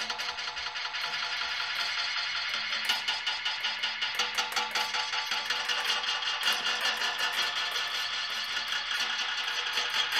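Experimental noise played on a homemade contact-miked wing instrument, the pterophone, as its surface is scraped and worked with scissors, the pickup signal run through effects. It makes a dense, continuous wash of rapid scratchy clicks over a bed of sustained ringing tones, pulsing several times a second.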